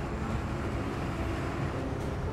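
Steady road traffic noise on a city street, a low, even drone of passing vehicles.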